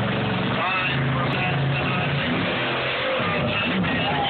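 Monster truck's engine running and revving as it drives across the dirt arena, its pitch rising and falling near the end, under music and an announcer over the stadium PA.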